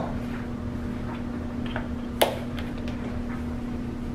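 Steady low hum of room background noise, with one sharp click about halfway through.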